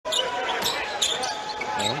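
Basketball game heard on a TV broadcast: a few sharp knocks of the ball bouncing on the court over steady arena crowd noise.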